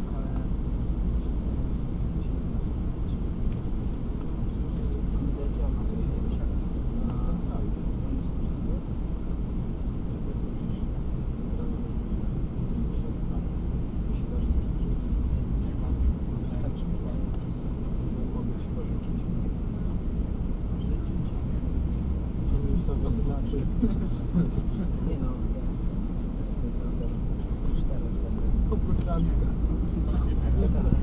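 City bus engine idling with a steady low rumble, heard from inside the cabin, with voices talking in the background. The rumble gets louder near the end.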